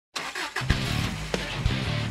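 Upbeat intro music with drum hits and a bass line, mixed with a car engine revving sound effect in the first half-second.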